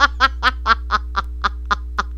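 A woman laughing in a quick run of short "ha" bursts, about four to five a second, trailing off toward the end. Underneath runs a steady low electrical hum on the line, which came on when her headphones were plugged in.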